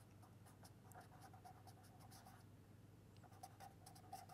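Faint scratching of a pen writing on paper in short, irregular strokes.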